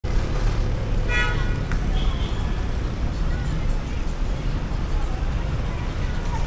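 Street traffic: a steady low rumble of vehicle engines, with one short horn toot about a second in.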